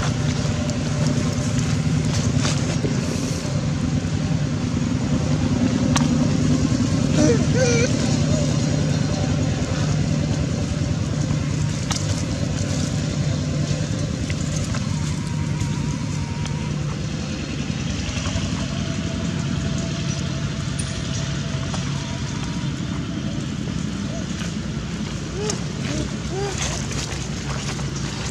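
A steady low motor drone, with a brief wavering chirp about seven seconds in.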